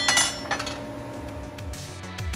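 Steel parts clinking: a bright, briefly ringing metal clink right at the start and a lighter one about half a second in, as welded steel bearing housings and ball bearings knock against each other and the steel bench.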